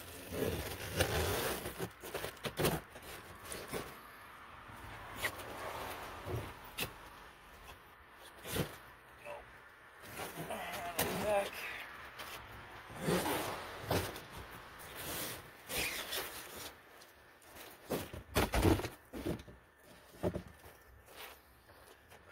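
A cardboard shipping box being cut open with a utility knife and its flaps pulled apart: irregular scraping, tearing and rustling of cardboard, with sharp knocks and clicks throughout.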